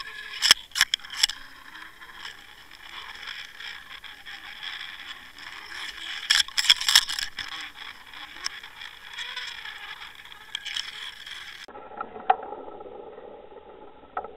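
Scraping and rustling with sharp clicks and knocks, picked up underwater through the housing of a camera rig drifting over the seabed. The clicks are bunched near the start and again in the middle.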